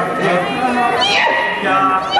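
Maasai voices chanting together in layered parts, with a sharp high cry that slides down in pitch about a second in.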